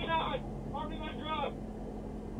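Indistinct speech in two short bursts over the steady hum of an idling patrol car.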